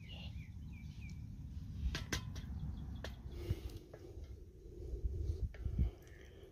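Outdoor background with a steady low rumble and a small bird chirping a few times in the first second. A few light clicks follow around two to three seconds in.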